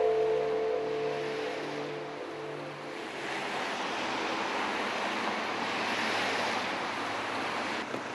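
The last held notes of a song fade out over the first few seconds, giving way to a steady rushing outdoor noise with no clear tone, strongest about six seconds in.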